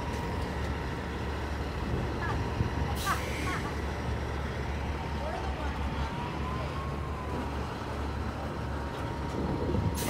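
Diesel semi-truck pulling a livestock trailer at low speed, its engine a steady low drone. There is a brief hiss about three seconds in.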